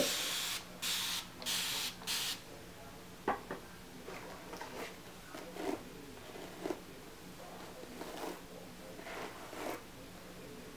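A mist spray bottle sprays water into hair four times in quick succession, each a short hiss. After that comes faint, scattered rustling as a Denman paddle brush is pulled through the damp section of hair.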